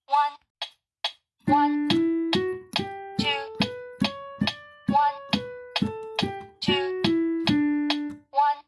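Piano playing a one-octave D major scale with the right hand, starting about a second and a half in: single notes step up from D to the D an octave above and back down, about two or three notes a second, ending on a held low D. An electronic metronome clicks steadily before the scale begins.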